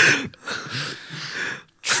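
Men laughing into microphones: a sharp burst of laughter, then breathy, mostly unvoiced laughter that fades out.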